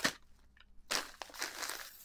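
Thin plastic shopping bag crinkling and rustling as a hand works inside it: a short burst at the start, then a longer stretch of crackly rustling from about a second in.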